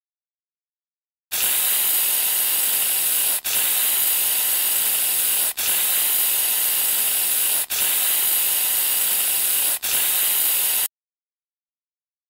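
Hissing spray from a rubber-bulb mist sprayer: five sprays back to back, each about two seconds long with the last one shorter, separated by brief breaks and stopping suddenly.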